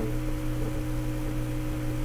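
A steady, unchanging hum made of a few constant low tones.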